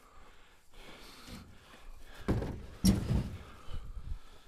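Firewood rounds of dry black locust knocking and thudding as they are handled at a pickup truck's bed: two hard knocks about half a second apart a little past the middle, the second the sharpest, then lighter knocks near the end.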